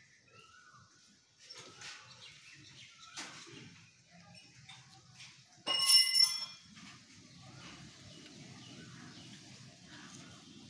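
A single sharp metallic ring just under six seconds in, dying away within a second, with faint knocks and rubbing before and after.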